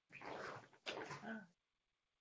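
Faint speech over a video-call link: a man saying a short word or two, "voilà".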